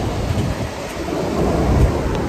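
Wind blowing across a phone's microphone: a loud, uneven low rumble with a hiss over it.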